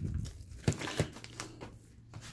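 Bubble wrap and a padded paper envelope crinkling as plastic Blu-ray cases are pulled out and handled, with two sharp clicks of the cases close together.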